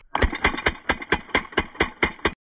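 Crosman DPMS SBR CO2 BB rifle firing a rapid, evenly spaced string of shots, about four or five a second.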